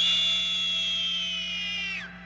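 A woman's long, high-pitched scream, held for about two seconds and sliding slightly down in pitch before it cuts off.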